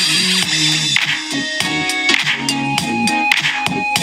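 Music played through the Lenovo Yoga C930 laptop's Dolby Atmos soundbar speakers in its hinge, picked up by a microphone at the speaker grille: a song with sustained notes and sharp percussion hits.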